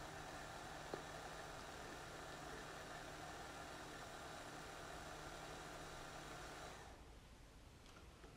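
Hand blender's motor on a chopper-bowl attachment running steadily, heard only faintly, blending milk and banana into a smoothie. It cuts out about seven seconds in.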